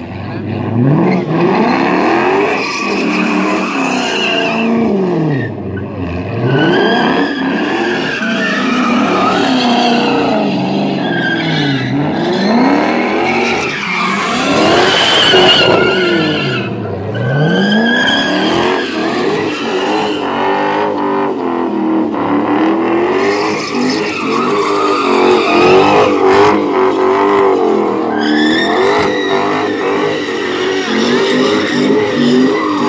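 Chrysler 300 sedan doing donuts: the engine revs up and down every few seconds while the spinning tyres squeal continuously on the pavement.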